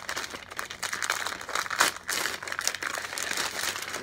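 Brown paper bag crinkling and rustling as it is unfolded and opened by hand, a continuous stream of papery crackles.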